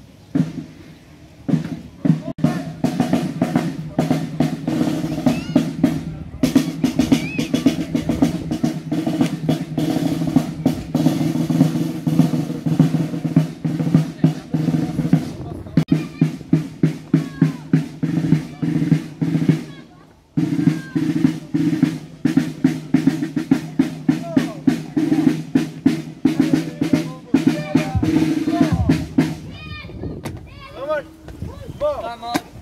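Marching snare drums of a Bergen buekorps (boys' brigade) playing a fast marching beat with rolls. The drums start about two seconds in, break off briefly about twenty seconds in, then carry on.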